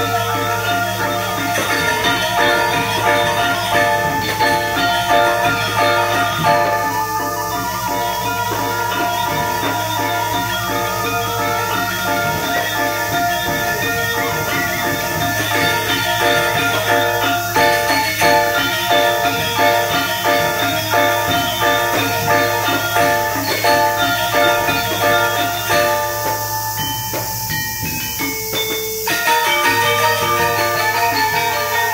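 Balinese gamelan playing dance music: bronze metallophones ringing in a fast, dense rhythm over a steady low gong tone. The upper parts thin out briefly near the end, then the full ensemble returns.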